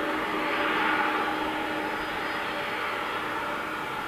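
Boeing 767-200ER airliner's twin jet engines running steadily on the runway: a broad rush with a held whine. It is loudest about a second in, then eases slightly.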